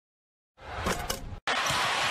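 Basketball arena game sound: crowd noise with a ball bouncing on the court. It starts abruptly after silence about half a second in, with a brief cut near the middle.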